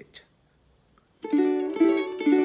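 Ukulele tuned up a whole step (A–D–F#–B) strummed: a chord rings out about a second in, and a second strum follows just over half a second later.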